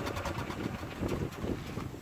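Strong wind buffeting the microphone in an uneven low rumble, with a few brief clicks and rustles in the first half second.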